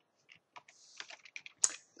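Computer keyboard being typed on: a handful of separate keystrokes entering a number, the loudest about one and a half seconds in.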